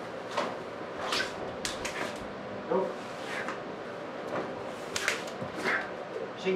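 Swishes and rustles of several karate students moving through a kata: clothing and arms swishing as techniques are thrown, and feet shifting on the floor, with a short vocal sound about three seconds in.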